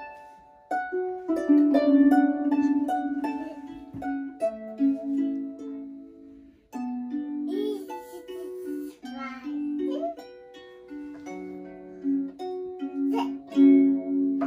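Harp being plucked: a slow melody of single ringing notes and chords. The playing breaks off about seven seconds in and starts again a moment later.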